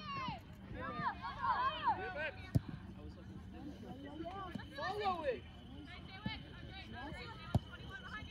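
Distant shouts and calls of players and onlookers at an outdoor soccer game, coming and going in short bursts, with two sharp knocks about two and a half and seven and a half seconds in.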